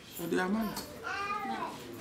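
A person's voice: two drawn-out vocal sounds, the second longer, with the pitch bending up and down.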